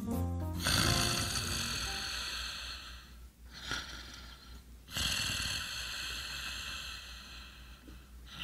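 Music ends just as this begins, then a person snores: two long drawn-out breaths of about two and a half seconds each, with a short snort between them.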